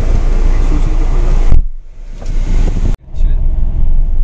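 Steady engine and road rumble heard from inside a Hyundai Creta. It turns muffled and quieter about one and a half seconds in, then breaks off abruptly near the three-second mark before the rumble comes back.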